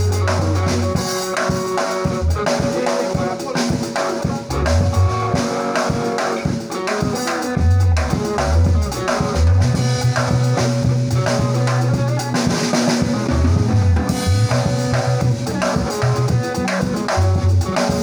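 Instrumental band music led by a Yamaha drum kit played with sticks, keeping a steady beat of snare, bass drum and cymbal hits over a low bass line.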